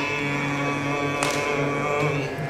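Male Carnatic vocalist holding a long, steady note between words of the lyric over a continuous drone, in raga Kambhoji.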